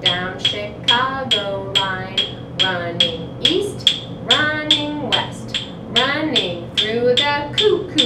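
Wooden rhythm sticks tapped in a steady beat, about two and a half sharp clicks a second, under a woman's chanted rhyme.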